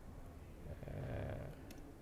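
A man's soft drawn-out hesitation sound, "uh", about a second in, over quiet room tone. Near the end comes one faint click, a key press on the laptop as the command is entered.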